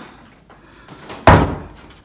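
A door bangs shut once, loud and sudden, a little over a second in, with a short echo dying away in the room.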